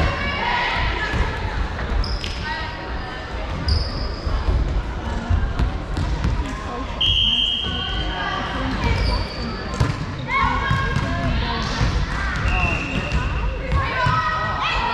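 Indoor volleyball play echoing in a large sports hall: sneakers squeaking in short high chirps on the hardwood court, with the thuds of a ball being struck and bouncing on the floor.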